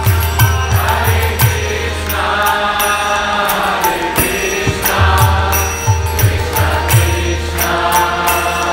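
Kirtan: devotional chanting with a steady rhythm of hand cymbals and a drum whose deep strokes slide down in pitch, over sustained droning tones. Sung phrases come in every few seconds.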